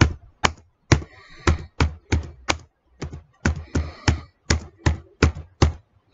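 Typing on a computer keyboard: a quick, irregular run of sharp keystroke clicks, about three a second.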